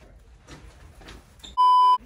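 A loud, steady electronic beep at one pitch, lasting under half a second near the end, with the room sound cut out beneath it. Before it there is only faint rustling.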